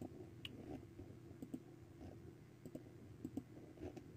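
Faint, scattered clicks of a computer mouse and keyboard being used, over a low steady hum.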